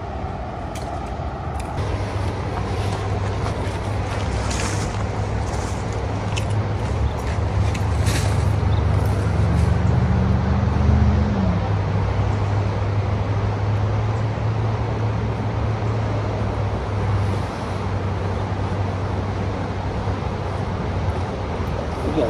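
A motor engine droning steadily at a low pitch over a steady hiss, with a brief rise and fall in pitch about halfway through.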